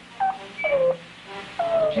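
Electronic beeping sound effect standing in for a robot puppet's voice: three short tones, each sliding down in pitch, the last the longest.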